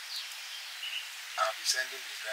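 Steady outdoor background hiss, with a woman's voice speaking briefly about a second and a half in.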